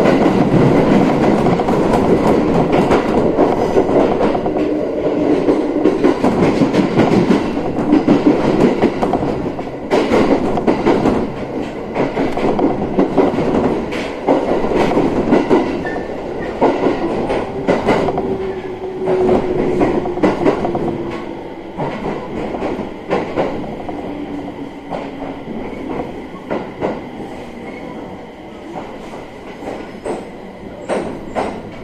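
Ride inside a JR East 701 series electric train car: wheels clacking over rail joints and points as the train slows into a station, the running noise fading steadily. A faint held tone sounds twice a little past the middle.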